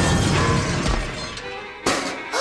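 Cartoon crash sound effect with a shattering, breaking sound as a cow kicks someone, fading over about a second and a half, then a second sharp hit near the end; music plays underneath.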